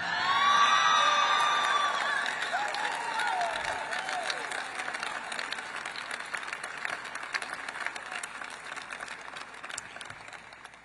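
Audience applauding and cheering, with shouts and whoops in the first couple of seconds; the applause then slowly dies away.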